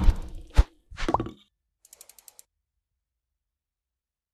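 Sound effects of an animated logo sting: a hit at the start, a sharp thump about half a second in, a short burst with a brief tone around a second in, then a quick run of about six faint clicks.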